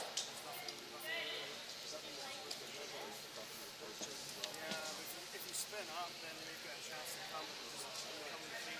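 Quiet, indistinct talk between curlers and their coach on the ice, picked up by the on-ice microphones over arena room sound, with a few faint clicks.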